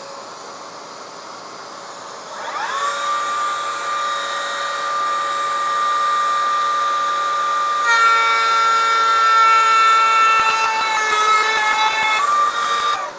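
A dust extractor runs steadily while a table-mounted router spins up with a rising whine about two and a half seconds in, then runs at a steady pitch. From about eight seconds the bit cuts a rabbet in a board fed along the fence, and the sound grows louder, with extra whining tones.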